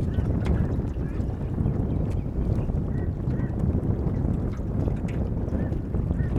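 Steady wind rumble on the microphone, with a few brief faint bird calls about halfway through and again near the end.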